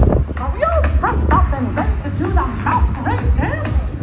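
Dance music played over a stage sound system, with a pulsing heavy bass beat and many short, high vocal cries over it.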